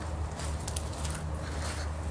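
Footsteps on grass and gravel, heard as faint irregular scuffs over a steady low hum.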